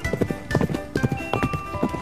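Cartoon sound effect of horse hooves clip-clopping in a quick, even run, over background music with held notes.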